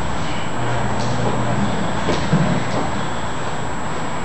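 Two people grappling on martial-arts mats: gi cloth rustling and bodies shifting and scuffing on the mat over a steady hiss, with a couple of light knocks.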